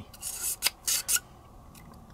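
Black nylon bore brush on a steel cleaning rod scraping and rubbing during barrel cleaning: a few short rasps in the first second, then quiet.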